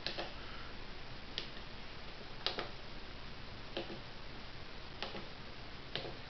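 Single sharp clicks from a relay computer board, about one every second and a bit, over a faint steady hum.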